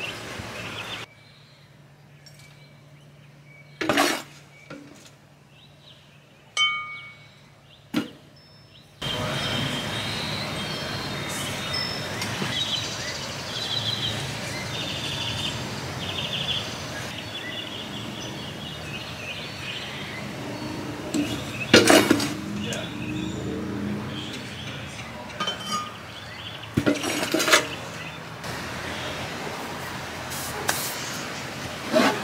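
Small terracotta and ceramic plant pots knocking and clinking against a glass tabletop, a handful of separate sharp clinks over steady background noise.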